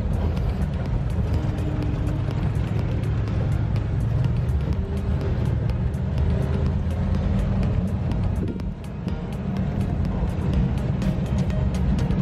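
Pickup truck driving downhill, heard from the open rear bed: a steady low engine and road rumble with frequent small rattles and clicks. The level dips briefly about two-thirds through.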